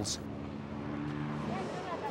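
Vehicle engine idling: a steady low hum of a few even tones over street noise.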